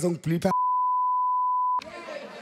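A TV censor bleep: one steady high-pitched beep, a little over a second long, laid over a man's swear word. It starts about half a second in and cuts off suddenly.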